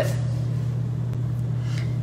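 An oven running while it bakes, giving a steady low hum with no change in pitch.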